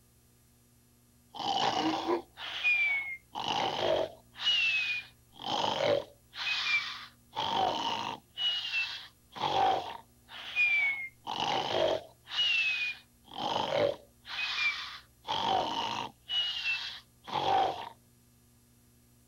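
A man snoring heavily and rhythmically, starting about a second and a half in. Each breath is a rasping snore followed by a second snore with a thin, falling whistle, about one full breath every two seconds.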